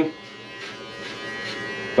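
Electric hair clippers running steadily while cutting short hair on the top of the head.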